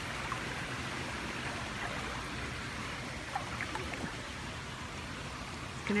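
Swimming-pool water making a steady rushing sound, with a few small splashes.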